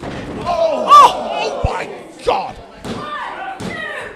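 A wrestler's body slammed down onto the wrestling ring mat with a thud about two seconds in, after a loud yell about a second in, with shouting voices around it.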